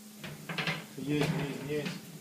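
A man talking over a steady low hum of ship's engine-room machinery.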